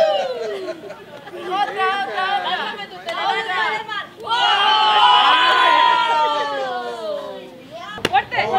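Young children's high voices chattering and shouting over one another. About halfway through they rise together into a long, loud shout that fades away near the end.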